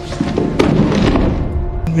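A man and his wooden chair falling over onto the floor: a burst of thuds and clatter that starts shortly after the beginning and is loudest about half a second in, over film-score music.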